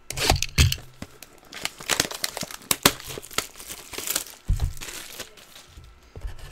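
A shrink-wrapped cardboard hobby box of baseball cards being unwrapped and torn open by hand, with the plastic wrap crinkling and tearing in a run of sharp crackles. Low thumps of the box being handled against the table come near the start and again about four and a half seconds in.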